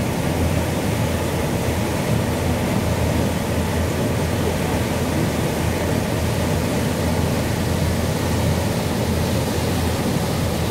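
A cruise boat's engine running steadily, with the wake churning behind the stern: an even low-pitched noise with a rush of water over it.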